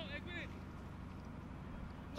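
Quiet outdoor ambience over a steady low hum, with two faint, short, high calls in the first half-second.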